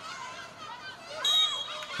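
Football match sound with faint shouts and voices from players and spectators, cut by one short, sharp referee's whistle blast about a second in.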